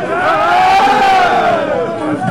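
A single voice gives one long, loud, high shout that rises and then falls in pitch, over the noise of a crowd.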